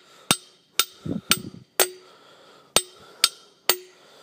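Claw hammer striking a wooden sign stake, demonstrating how the stake was driven into the ground. There are seven sharp knocks at about two a second, with a short pause after the fourth, and each knock rings briefly.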